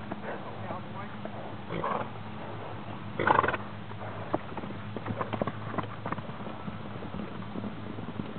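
Horses close by, one giving a loud snort about three seconds in; then hoofbeats on dry packed ground as the horses move off at a canter, a quick uneven patter of strikes.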